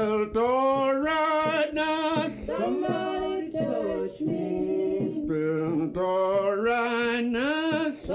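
Music: a song with men's voices singing, several sung lines sounding together with vibrato.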